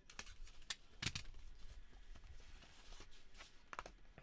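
A cardboard box and its packaging being handled and pulled open by hand: a few sharp crackles and clicks with soft rustling between them.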